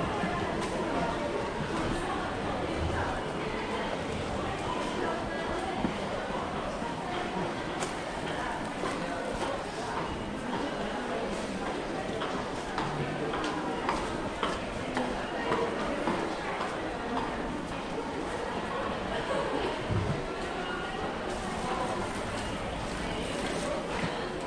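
Busy underground station passage: many people's footsteps clicking on a tiled floor, with background voices of passersby, in a reverberant hall.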